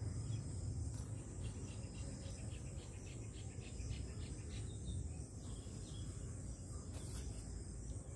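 Faint insect chirping, cricket-like: a steady high trill throughout, with a run of quick, evenly repeated chirps from about a second in until past the middle, over a low background hum.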